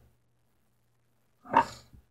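Near silence with a faint low hum, then one short, breathy vocal sound from a person, a grunt-like exhale, near the end.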